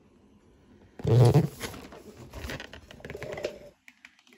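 Cardboard-and-plastic action figure box being handled and turned, with irregular rustling and clicking of the packaging, which fades out near the end. About a second in comes a brief loud low sound, the loudest thing here.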